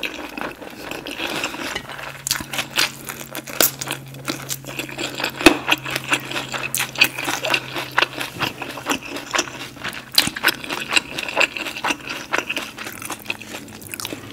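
Close-miked chewing of a mouthful of fresh rice-paper spring roll: many small wet mouth clicks and soft crackles, irregular throughout.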